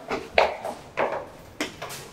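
A few short, sharp knocks on an apartment door, irregularly spaced about half a second apart.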